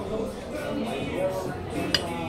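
Restaurant dining-room sound of faint background voices and music, with one sharp clink of dishware or cutlery just before the end.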